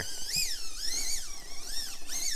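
Traxxas TRX-4M micro crawler's brushless motor whining, its pitch rising and falling several times as the throttle is worked on a steep rock climb.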